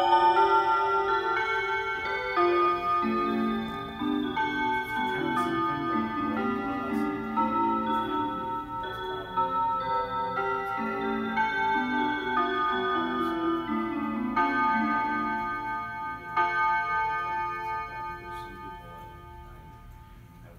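Seiko melody mantel clock playing one of its chime melodies through its speaker, a tune of pitched notes that fades out over the last few seconds.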